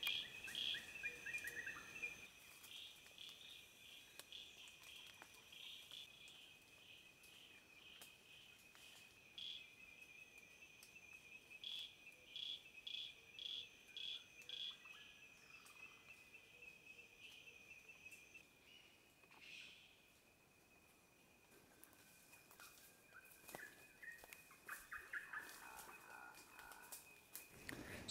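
Faint tropical forest ambience: a steady high-pitched insect drone with runs of short repeated chirps, about two a second in places.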